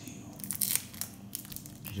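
Foil wrapper of a Topps Chrome baseball card pack crinkling in the hands and being torn open, a run of sharp crackles, heavier in the second half.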